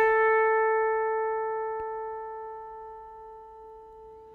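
A single electric guitar note played through an MXR Dyna Comp compressor pedal switched on, ringing out and fading slowly and evenly. The compressor is holding up the note's sustain, pulling down its attack and lifting the volume as it decays.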